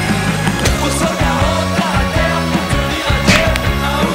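Rock music with electric guitar, bass and drums playing steadily, with regular drum hits.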